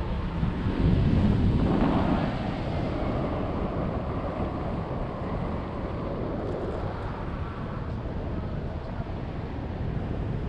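Airflow buffeting the microphone of a camera on a paraglider in flight: a steady low rumble of wind noise that swells about a second in and eases back after a couple of seconds.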